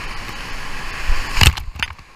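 Whitewater rapids rushing at high water. About one and a half seconds in comes a loud splash of water striking the kayak and camera, with a smaller splash just before the end.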